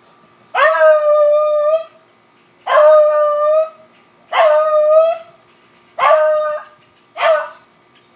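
Beagle baying at a squirrel it has chased up a tree: five long calls, each rising at the start then held on one pitch, the last two shorter.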